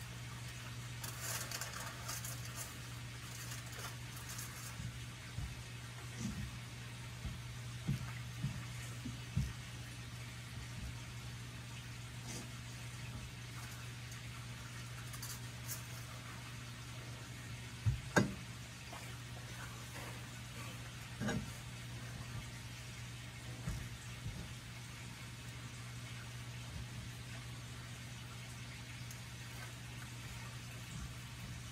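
A steady low hum with scattered knocks and clicks, the loudest a sharp double knock about eighteen seconds in.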